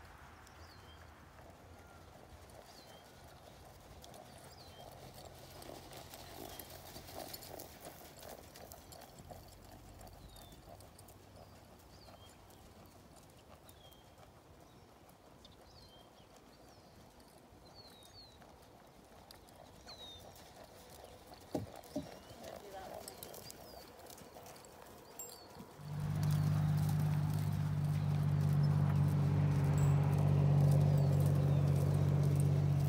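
Hoofbeats of a pony-sized grade mare cantering on arena sand, with small birds chirping. Near the end a steady low engine hum comes in and becomes the loudest sound.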